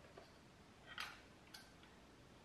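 Small camera accessories handled by hand, giving a few faint clicks: a brief rustle and sharp click about a second in, and a smaller click half a second later, over near silence.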